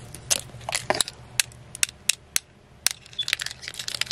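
Fingers handling a small lantern and the blue and green pieces fitted along its frame, giving a dozen or so irregular sharp clicks and taps.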